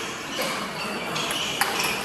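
Table tennis ball knocking on paddle and table: a click about half a second in, then a sharper hit from a forehand stroke and a quick bounce near the end.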